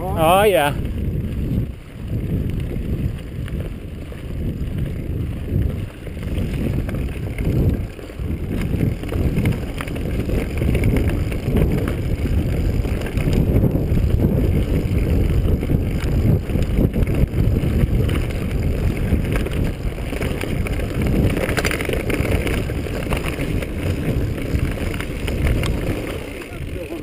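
Mountain bike riding fast down a rough dirt singletrack: wind buffeting the microphone over a steady rumble, with uneven jolts and rattles as the bike bounces over the ground.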